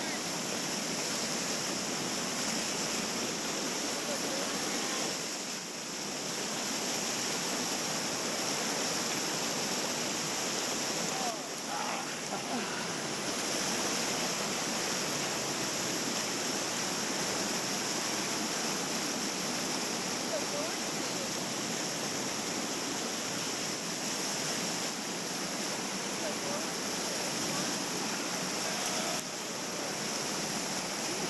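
Steady rush of river whitewater churning over rocks in a rapid.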